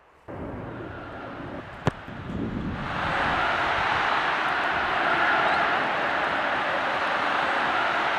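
A soccer ball struck with a single sharp thud about two seconds in, then a loud, steady rushing roar that swells up within a second and holds.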